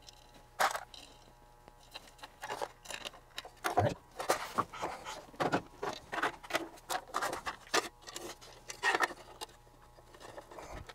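Irregular clicks, light knocks and short scrapes of a metal instrument plug-in and its sheet-metal cover being handled on a wooden workbench.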